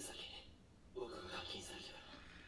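Quiet speech in two short stretches: a line of subtitled anime dialogue playing low in the mix.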